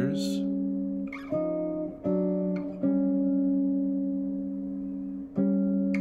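Clean electric guitar playing slow two-note intervals, each plucked and left to ring: about five dyads, the longest held for some two and a half seconds as it fades. The two voices step chromatically in contrary motion.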